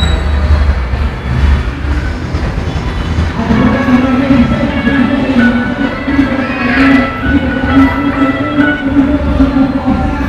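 Coin-operated kiddie ride running. A low rumble fills the first few seconds, then a loud, simple electronic tune of held notes comes in and plays on.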